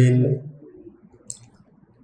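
A man's voice speaking into a microphone stops shortly in, leaving a quiet pause with one faint, short click a little over a second in.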